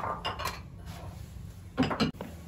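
A metal ladle clinking against ceramic bowls and the wok as boiled dumplings are dished up: a loud clatter at the start, a few lighter clinks, then another loud clatter near the end.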